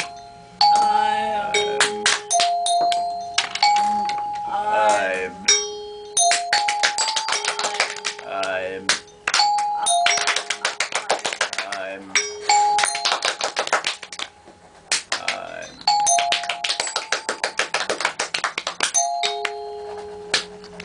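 Improvised noise chorus of several performers: steady held tones that step between a few pitches, layered with long stretches of rapid clicking and a few wavering, warbling glides.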